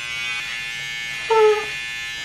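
Electric beard trimmer buzzing steadily as it works through a thick, overgrown beard. About a second and a half in, a brief high-pitched cry sounds over it.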